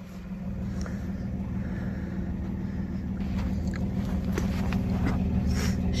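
Toyota pickup's V6 engine idling, a steady low hum with a few faint clicks over it.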